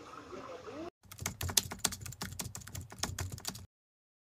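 Keyboard typing sound effect: a rapid run of sharp key clicks for nearly three seconds that cuts off suddenly, laid over a "few hours later" title card. It follows a brief stretch of faint outdoor ambience that ends with a hard cut.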